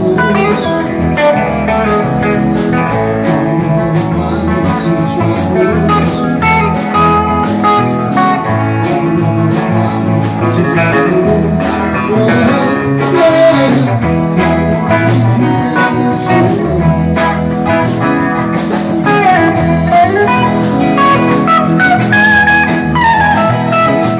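A live rock band playing an instrumental passage, with electric guitars over drums keeping a steady beat. In the last few seconds a lead guitar plays sliding, bent notes.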